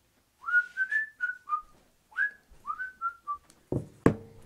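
A man whistling a short tune: two quick phrases of clear notes, each note sliding up into its pitch. A thump near the end.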